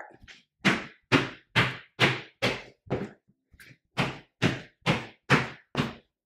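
Sneakered feet landing hard on the floor in a series of quick rebounding hops, about two thuds a second. There are five landings, a short pause as the jumper turns, then five more.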